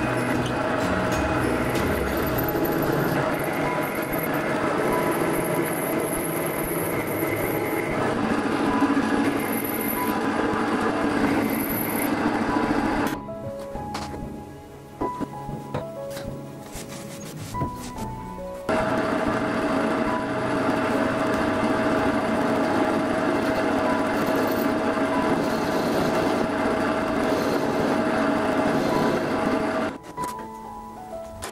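Metal lathe cutting an iron-nickel meteorite ring blank: a steady machining noise that stops about 13 seconds in and starts again a few seconds later. Background music plays under it and is heard alone while the lathe is stopped.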